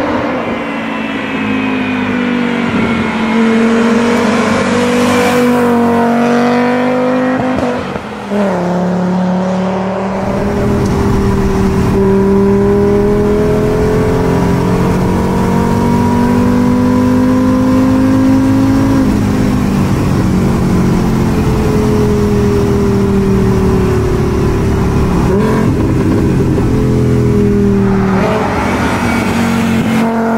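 VW Golf's 2.3-litre VR5 five-cylinder engine pulling hard through the gears, its pitch climbing in long runs and dropping at each gear change. It is heard first from outside as the car approaches, then from inside the cabin with a deep rumble under the engine note.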